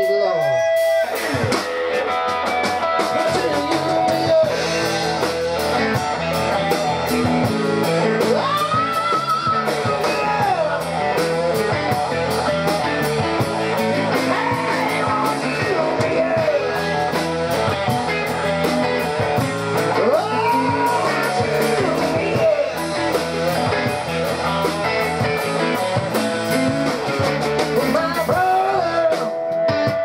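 Live rock band playing loud and steady: electric guitars and bass guitar over drums, the full band coming in about a second in.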